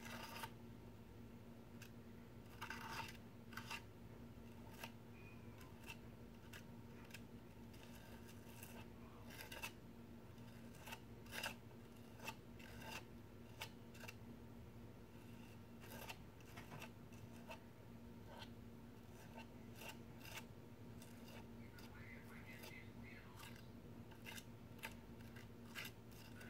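Metal palette knife spreading and scraping modeling paste across a plastic stencil: faint, irregular scrapes and light taps, over a steady low hum.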